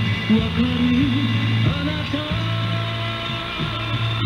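A song with a singing voice, played in a radio broadcast and heard from an off-air cassette recording made with poor reception. It sounds dull, with no highs.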